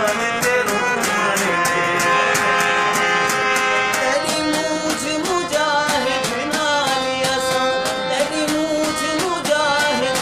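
A man singing a Saraiki folk song in full voice to harmonium accompaniment, the harmonium holding steady chords under his wavering melody, with an even beat of sharp ticks about three to four a second.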